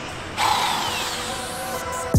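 Angle grinder with a paint-stripping wheel fitted, switched on with a sudden burst about half a second in, then whining down as it spins to a stop.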